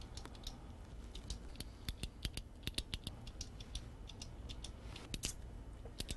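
Ballpoint pen being clicked: small, sharp, irregular clicks that come in quick clusters, over a low steady room hum.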